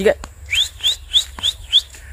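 A person whistling five short rising chirps in quick succession, about three a second, calling an animal that is not coming.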